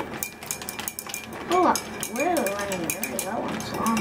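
A plastic zipper storage bag crinkles and rustles in quick small crackles as a child's hands dig deli meat out of it.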